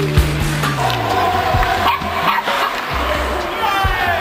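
Indoor ice hockey rink sound: music and voices, with several sharp knocks of sticks and puck on the ice.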